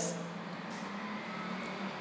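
A faint, steady low hum with a few held low tones over an even background hiss.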